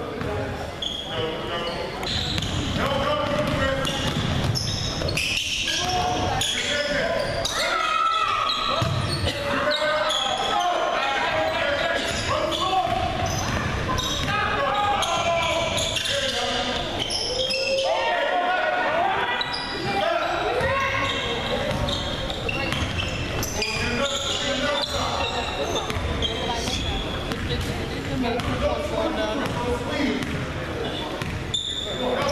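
Basketball dribbling and bouncing on a hardwood gym floor, with players' and onlookers' voices shouting and calling, all echoing in a large gym.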